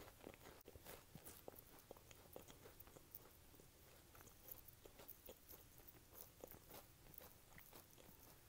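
Close-miked chewing of a crisp cookie: quiet crunches and small crackles, most frequent in the first couple of seconds and then sparser.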